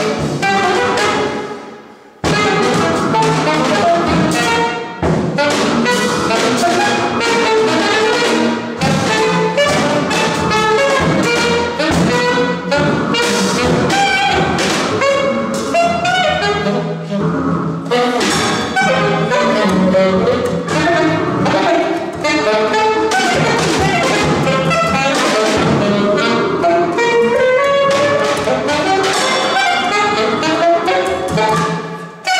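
Free jazz played live by a saxophone, double bass and drum trio, dense and busy. The sound drops away about a second in, then the band comes back in abruptly and plays on.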